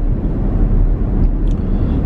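Steady low rumble of a car heard from inside the cabin, the engine and road noise filling the pause between words. A faint small click comes about a second and a half in.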